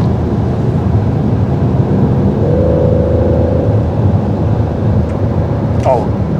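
Cabin noise of a Peugeot 5008 with the 1.2-litre three-cylinder turbo petrol engine, accelerating: steady road and tyre rumble under the engine. About two seconds in, a thin steady tone rises slightly in pitch and holds.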